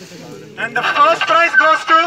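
Speech: a voice speaking loudly from about half a second in, after a quieter stretch of low background sound.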